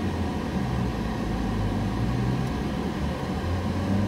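A car's engine and road noise heard from inside the cabin as it drives slowly, a steady low hum.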